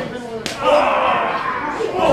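A single sharp slap of a wrestling strike landing about half a second in, followed by a drawn-out shout of voices.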